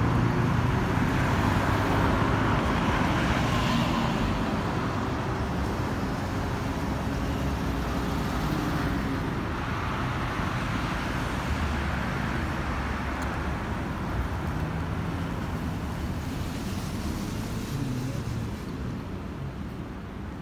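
Road traffic: cars driving past close by, a steady mix of engine and tyre noise that is loudest in the first few seconds and slowly dies away.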